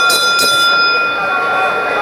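A hand bell rung with a few quick strokes, the last two just inside the start, then ringing out and fading over about a second and a half: the lap bell that marks the final lap of the 1500 m.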